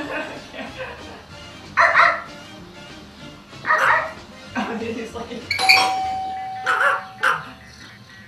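Small dog barking in short yaps every second or two, with one steady chime tone ringing for nearly two seconds about two-thirds of the way through.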